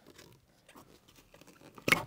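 Gloved hands handling a plastic fuel pump wiring connector, pressing its release clip to unplug it: faint rustling and small clicks, then one short, louder sound just before the end.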